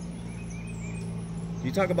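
A steady low machine hum with faint bird chirps. A voice comes in near the end.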